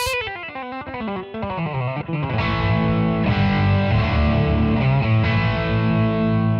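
Stratocaster-style electric guitar played through a Roland Blues Cube amp on its stock sound. It opens with a fast legato run of hammer-ons and pull-offs, then from about two seconds in moves into louder, fuller sustained notes.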